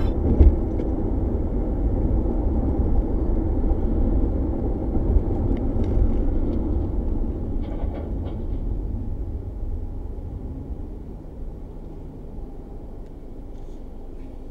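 Steady low road rumble of a car driving at highway speed, picked up by a dashcam inside the cabin, growing quieter over the last few seconds, with a few faint clicks.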